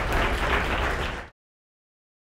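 Audience applauding, a dense steady clatter of many hands clapping that cuts off suddenly a little over a second in.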